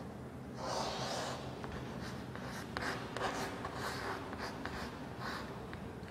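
Chalk writing on a blackboard: faint scratching and small taps of the chalk as words are written, a little louder about a second in.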